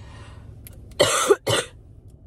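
A woman coughs twice in quick succession, about a second in. She is congested, with a running nose.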